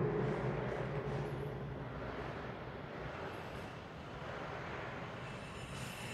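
Faint, steady background noise of an empty tiled room with a low hum underneath, with no distinct events.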